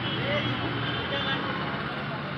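A steady low mechanical hum, with faint distant voices over it.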